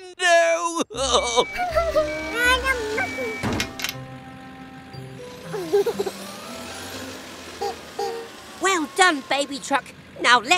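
Cartoon background music with steady held notes and a bass line, over wordless character vocal sounds near the start and again near the end, and a single knock about three and a half seconds in.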